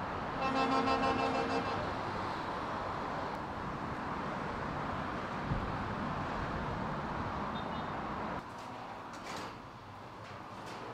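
Outdoor street ambience with a steady wash of traffic noise; a vehicle horn sounds once for about a second near the start. Near the end the background drops to a quieter indoor tone with a few light clicks.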